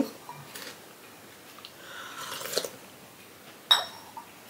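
A soft sip of tea, then a single sharp clink of a porcelain teacup against its saucer near the end.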